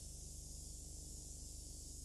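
Faint steady electrical hum with hiss: the noise floor of an old broadcast recording, with no distinct event.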